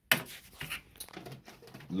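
Plastic handling noises: a sharp knock at the start, then a few lighter knocks and rustles as a plastic funnel is set into the steam iron's water-tank filler and a large plastic water bottle is picked up.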